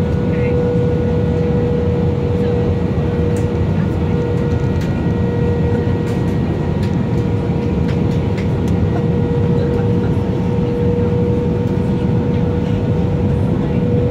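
Airliner cabin noise: a loud, even rumble of engines and rushing air with a steady whine held at one pitch.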